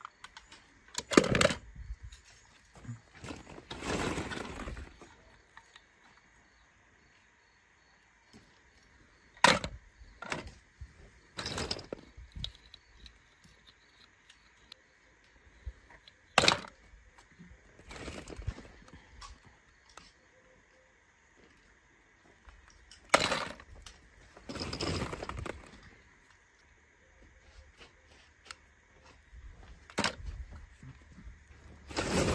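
Die-cast toy cars clattering against each other and a plastic bowl as they are handled and dropped in: a handful of sharp clacks and a few longer rattles, spread out with gaps between them.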